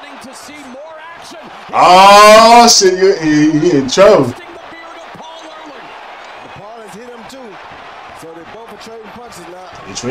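A man's loud, drawn-out vocal exclamation about two seconds in, running on into more excited voice for a couple of seconds. Before and after it, a quieter man's voice talks steadily in the background.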